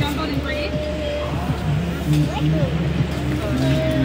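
Steady background noise of a busy indoor food market: a low hum with indistinct voices.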